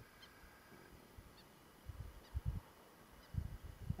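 Quiet outdoor ambience with a few faint, short, high bird chirps and some soft low rumbles.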